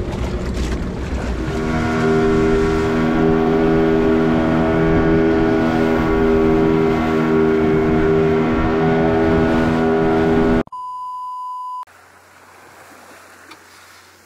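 Outrigger boat's engine running steadily at speed, its drone held at one pitch over wind and rushing water. Near the end it cuts off abruptly and a steady high beep sounds for about a second, followed by quieter low hum.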